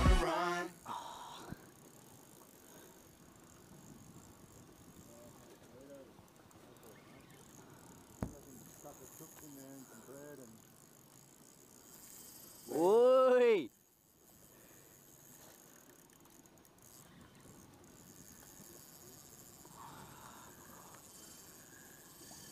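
Fishing reel drag buzzing loudly once, for about a second, as a hooked fish pulls line off the reel; the pitch rises and falls with the speed of the run. Otherwise faint background sound.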